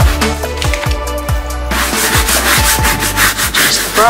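Electronic background music with a steady kick-drum beat. From a little under halfway in, a soft round brush scrubs wet, soapy GG coated canvas with a rubbing, hissing sound.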